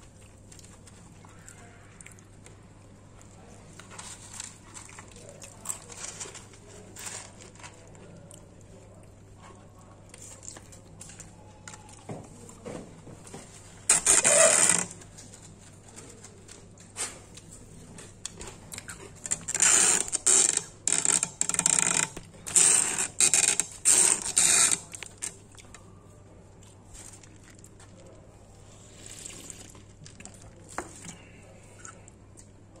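Close-up handling noise of a takeaway meal: a plastic fork, cardboard box and packaging scraping and rustling, with scattered small clicks. There is one loud burst about halfway through and a run of about ten short, loud ones a few seconds later, over a faint steady hum.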